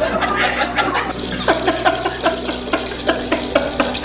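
A man laughing in a string of short bursts, about three a second, through the second half.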